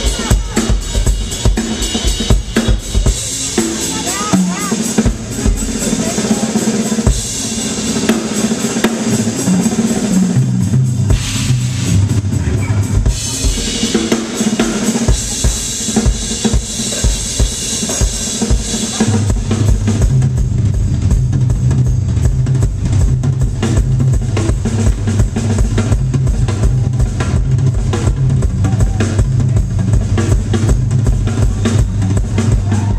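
Live jazz-funk band playing: a drum kit with bass drum and snare keeping a steady beat under electric bass, electric guitar and keyboards, with the bass line coming forward strongly about ten seconds in and again in the second half.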